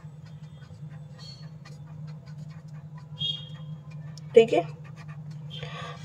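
Green felt-tip marker writing on paper: faint scratchy strokes, with a brief squeak about three seconds in, over a steady low hum.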